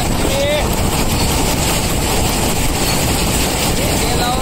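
Combine harvester running steadily at a constant loud pitch while its unloading auger pours threshed wheat into a trolley.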